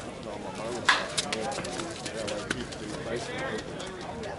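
Slowpitch softball bat striking the ball: one sharp, loud crack about a second in, followed by a few fainter clicks, over low murmured voices.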